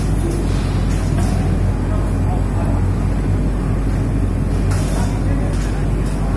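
Powder coating plant machinery running: a loud, steady drone of fans and motors with a strong low hum. A few brief hisses cut in over it.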